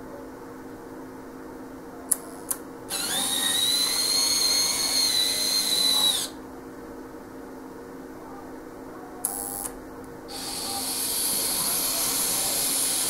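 Z scale model locomotive motors whining high-pitched as the locos run along the track: one runs for about three seconds from about three seconds in, and another starts up near the end. A pair of sharp clicks comes before each run, over a faint steady hum.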